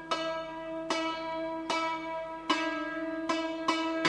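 Santoor in raag Todi, single hammer-struck notes ringing out about one a second, coming quicker near the end, over a steady low drone.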